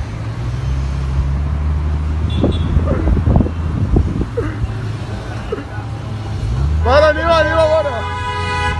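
Car engine running at low road speed with a steady low drone, picking up about six and a half seconds in. Near the end a loud voice shouts over it.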